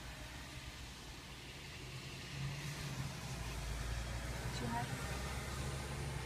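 A car engine idling: a low steady rumble that grows louder about three seconds in.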